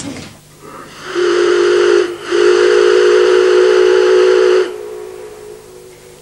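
Steamship's steam whistle blowing a short blast and then a longer one of about two and a half seconds: a single steady note carried on a hiss of steam. A softer hiss lingers after the whistle stops.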